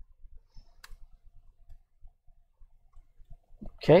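Computer mouse and keyboard being used at a desk: one sharp click about a second in, with faint low ticks throughout.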